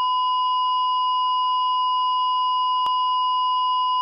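Heart monitor flatline sound effect: one continuous, unwavering electronic beep at a single high pitch. It is the signal of a stopped heart.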